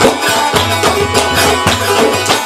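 Instrumental Khowar folk music: a Chitrali sitar (long-necked plucked lute) playing a melody over frame drum strokes that come about twice a second.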